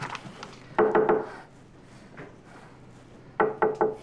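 Knuckles knocking on a wooden door: three quick knocks about a second in, then three more near the end.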